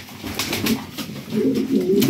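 Domestic pigeons cooing, the low coos growing stronger in the second half.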